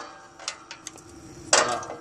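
Steel plow hardware handled with gloved hands: a few light metallic ticks, then one louder metal clank about one and a half seconds in.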